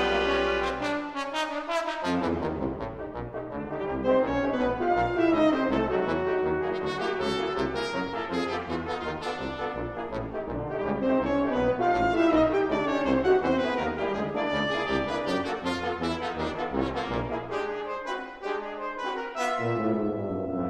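Brass octet of trumpets, horn, trombones and tuba playing in chords and overlapping lines. The low bass drops out briefly about a second in and again near the end.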